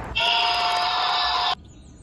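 Small vibration motor buzzing steadily inside a 3D-printed toy cage, shaking the LEGO figure in it; the buzz cuts off suddenly about a second and a half in, leaving faint high chirps.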